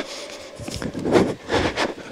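A soccer ball being dribbled and passed on artificial turf, with a few soft knocks from the touches, over the background noise of a large hall.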